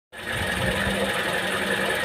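Car engine running with a steady, rough hum from the water pump, which the mechanic takes for a faulty water pump.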